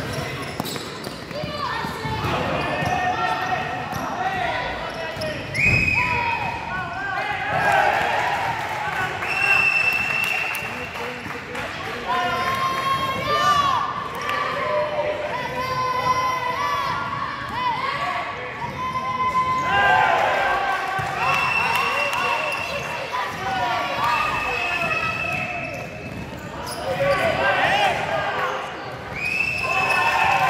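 Basketball game on an indoor court: a ball bouncing on the floor, sneakers squeaking in short pitched squeals, and players and spectators calling out, all echoing in a large sports hall.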